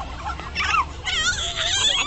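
A young child whimpering, then breaking into a high, wavering cry about a second in, having just been hurt in rough play.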